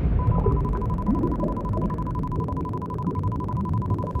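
Sound-design drone: a low, rumbling hum under a steady high beep tone that starts just after the beginning and is held without change.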